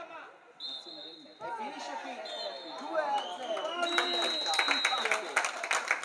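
Referee's pea whistle blown three times, the third blast the longest: the traditional triple whistle that ends the match. Players' shouts go on throughout, and hand clapping starts about four seconds in.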